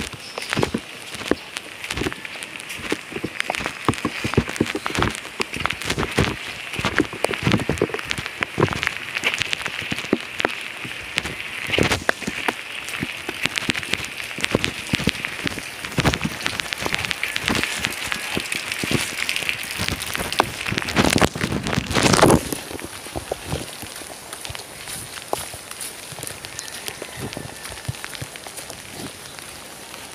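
Steady rain falling, with close raindrops striking in many quick, sharp taps. A brief louder rush of noise comes about two-thirds of the way through.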